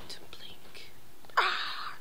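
A woman whispering softly, then a sudden loud breathy burst of voice a little under a second and a half in that fades quickly.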